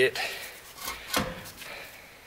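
A few short knocks and clunks, the loudest just over a second in, from handling under the car.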